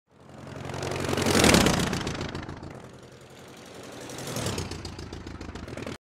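Engine noise with a steady low hum and a rushing sound that swells to a peak about a second and a half in, fades, swells again past the four-second mark, then cuts off suddenly.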